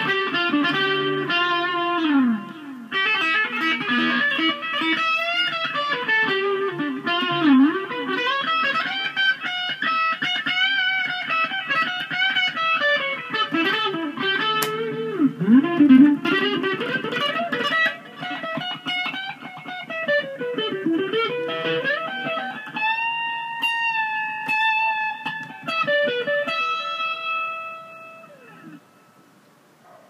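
Electric guitar played solo, improvised lead lines with string bends and vibrato. Near the end it settles on long held notes that fade away.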